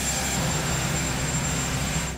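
Helicopter on the ground with its turbine engines running: a steady rushing noise with a thin, high-pitched whine over it. Both cut off suddenly at the end.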